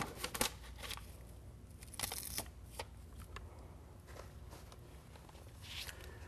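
Faint rustling and crinkling of Tyvek housewrap being handled as a cut flap is folded up, with a brief louder rustle about two seconds in and a few light clicks.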